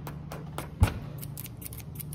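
Scissors cutting card: a string of short, sharp snips, with one louder thump a little under a second in.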